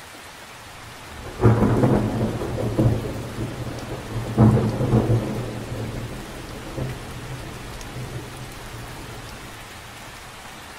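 Steady rain falling on lake water, with a clap of thunder breaking in about a second in. The thunder peaks twice and rolls away over several seconds, leaving the rain.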